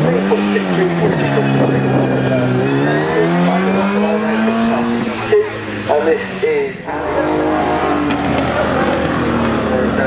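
A racing car's engine revving hard as it launches from the start line and accelerates away, its pitch rising, dropping back at a gear change and climbing again, then fading as the car draws off.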